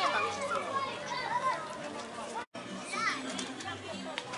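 Indistinct chatter of a crowd of adults and children talking and calling, with a sudden brief dropout about halfway through where the sound cuts.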